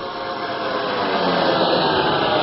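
A steady rushing whoosh sound effect that swells gradually in loudness, with a faint hum running through it.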